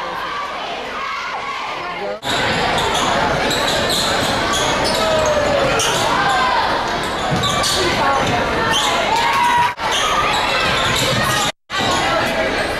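A basketball being dribbled on a hardwood gym floor, with shouts and chatter from players and spectators echoing in the hall. The sound gets louder about two seconds in and drops out briefly twice near the end.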